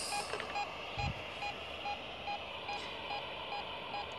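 Ghost radio sweeping: steady static with short beeps repeating about two and a half times a second. A brief low thump about a second in.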